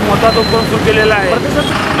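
A man speaking in Marathi, with street traffic in the background.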